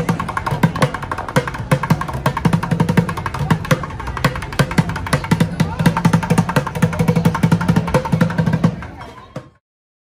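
Street bucket drummer beating upturned plastic buckets with drumsticks in fast, dense rolls of strikes. The drumming cuts off suddenly near the end.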